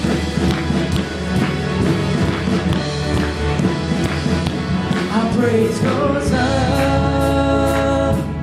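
A live worship band playing an instrumental stretch of an upbeat praise song, with drums, electric guitars, acoustic guitar, bass and keyboard. Held notes grow stronger about five seconds in.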